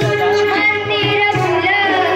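A group of children singing a Marathi welcome song (swagat geet) together into microphones. Musical accompaniment with held tones and a steady beat runs underneath.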